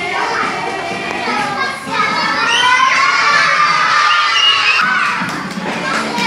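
A classroom of young children shouting and cheering together, many voices at once. They grow louder about two seconds in.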